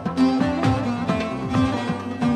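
Instrumental passage of a Turkish folk song: a plucked string instrument plays a melody over a regular beat, with no singing.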